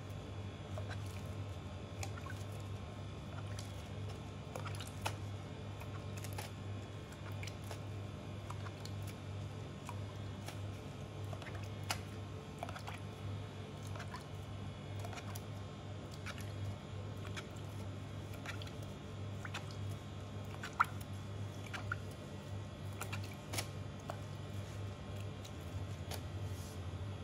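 Pastry brush dabbing syrup onto a soft sponge cake and knocking against a plastic tub, giving faint scattered taps and clicks over a steady low hum in the room.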